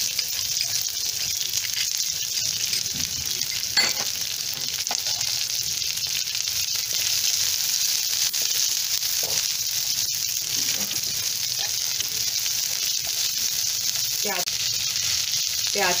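Chopped onion sizzling steadily in hot oil on a tawa, among crackled mustard and cumin seeds, at the start of being sautéed until transparent. One sharp tap is heard about four seconds in.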